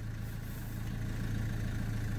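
Chevrolet Cruze 1.7 four-cylinder diesel engine idling steadily.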